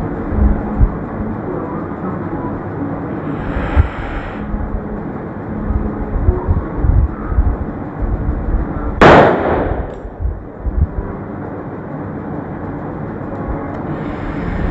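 A latex balloon being blown up by mouth, breath after breath, then bursting with one loud bang about nine seconds in.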